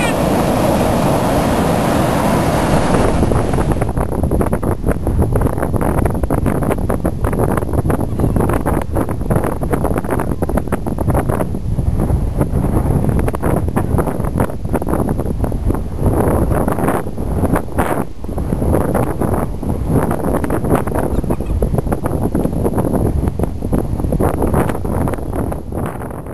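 Ocean surf washing in for the first few seconds, then wind buffeting the microphone: a loud, low noise that gusts unevenly.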